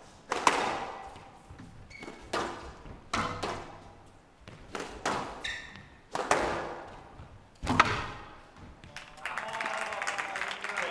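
Squash ball struck back and forth in a rally on a glass court: sharp racket hits and wall strikes every second or two, each ringing on in the large hall. Near the end the rally stops and crowd applause starts.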